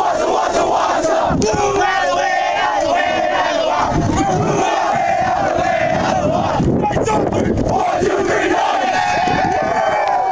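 A football team's players shouting their victory chant together, many voices at once in loud, drawn-out yells.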